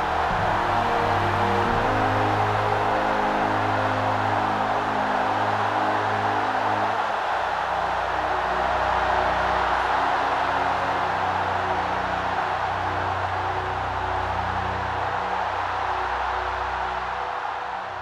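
Slow soundtrack music with long-held low notes, over the dense, steady roar of a huge open-air crowd's voices. The roar thins slightly near the end.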